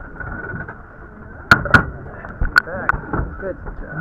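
Low background voices broken by four sharp knocks, two close together about a second and a half in and two more about a second later.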